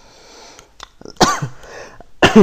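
A man coughs once, a loud sudden burst a little over a second in, after a quieter stretch.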